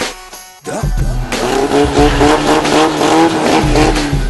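A car engine at high revs with tyres squealing, loud over the backing music; it starts suddenly about half a second in after a short drop in the sound.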